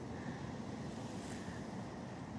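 Steady low background rumble with no distinct events.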